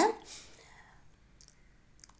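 A woman's spoken word trails off, then a quiet stretch with one faint, short click about one and a half seconds in.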